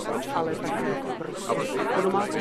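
Several voices talking over one another in a babble of chatter; no single word stands out.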